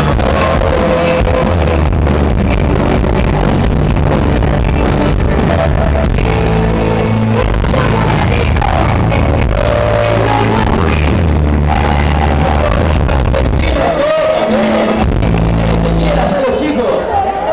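Live band with drums and bass playing loud while a man and a woman sing into microphones, recorded from the audience. The bass and drums drop out briefly near the end, then come back in.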